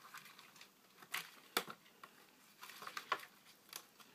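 Faint handling noises while a feeder locust is fetched from its tub: a handful of scattered sharp clicks with light rustling and scratching between them.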